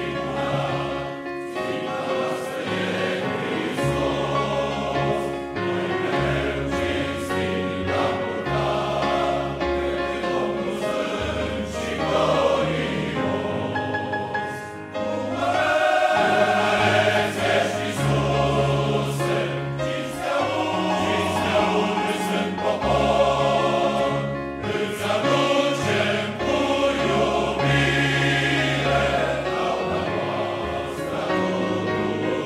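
Massed men's choir singing a sacred song in held chords, swelling louder about halfway through.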